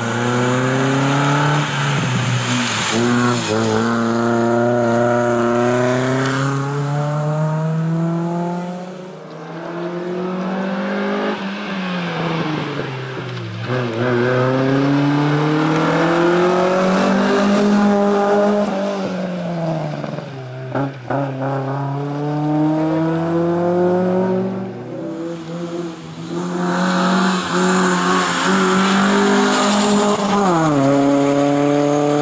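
A racing-prepared Honda Civic hatchback's four-cylinder engine revving hard through a cone slalom. Its pitch climbs on each burst of acceleration and drops back as the driver lifts and brakes, several times over, with a few sharp cracks about two-thirds of the way through.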